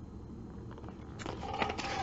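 Paper pattern sheet rustling as it is handled and lowered, starting a little past halfway through.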